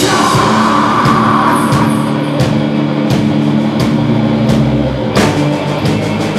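A heavy metal band playing live: distorted electric guitars, electric bass and drum kit. In the second half, drum hits land about every 0.7 s, with a heavy accent near the end.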